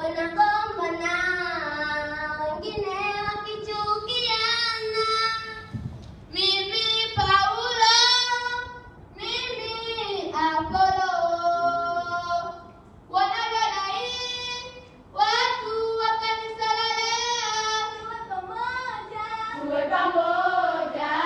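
A group of girls singing a song together on one melody line, in phrases with short breaks between them.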